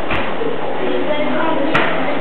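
Indistinct chatter of diners in a busy restaurant, with two sharp knocks, one just after the start and one near the end.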